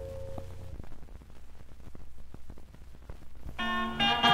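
The last held chord of a gospel song on a vinyl LP dies away, leaving the record's surface crackle and clicks in the silent groove between tracks. The instruments of the next song come in near the end.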